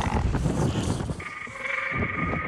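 A dragon's cry, a film sound effect: a long, steady, pitched screech that starts just past the middle. A low rushing rumble comes before it.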